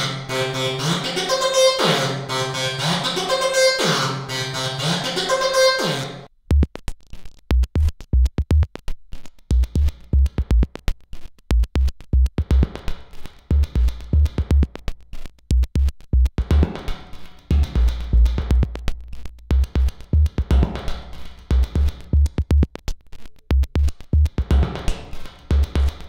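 Synthesizer demo music sent through a DIY plate reverb: a pitched synth phrase repeating about every two seconds stops abruptly about six seconds in. An electronic drum-machine beat with deep bass kicks and fast sharp clicks takes over, while the amount sent to the plate reverb is changed.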